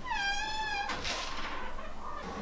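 A cat's single meow, rising and then held for just under a second, followed by a short click.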